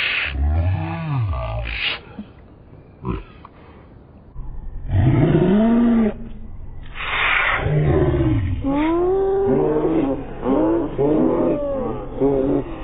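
A cartoon clown's sneeze, altered in speed and pitch. It opens with deep, drawn-out vocal sounds, then after a short lull a long rising-and-falling 'ahh' build-up comes about five seconds in, with a noisy 'choo' burst about seven seconds in. Several children then laugh.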